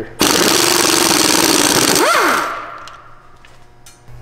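Pneumatic impact wrench hammering on a truck's front axle nut for about two seconds, then a brief whine that rises and falls in pitch as the wrench spins down.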